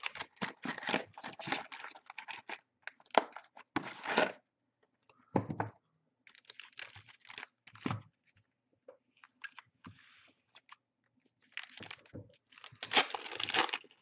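A box of 2019 NRL Elite trading cards being opened and its foil packs handled, with one pack torn open near the end. Irregular rustling, crinkling and tearing, loudest in the last couple of seconds.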